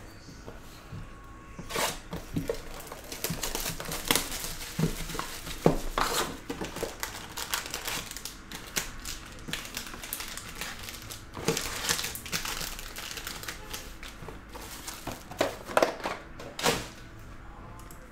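A trading-card hobby box being unwrapped and opened, then its foil packs pulled out and stacked: irregular crinkling and crackling of wrap and foil wrappers, with several sharper snaps.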